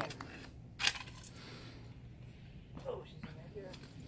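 One sharp clink, a hand digging tool striking something hard in the packed dirt of a bottle-dig hole, about a second in, with fainter ticks and scraping around it.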